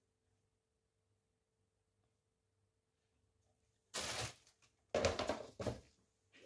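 Near silence with a faint steady hum for about four seconds, then a brief burst of noise and, a second later, a longer patchy burst of noise.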